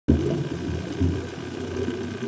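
Underwater sound picked up by a diver's camera: an uneven low rumble with a faint steady whine above it, swelling briefly about a second in.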